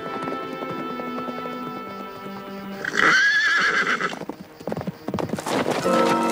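A horse whinnying once, a wavering call about halfway through, over orchestral score. A quick run of hoofbeats follows near the end as the horse rears and bucks.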